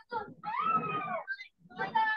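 A person's voice: short fragments of speech, with one drawn-out vocal sound lasting about a second in the middle that rises and then falls in pitch.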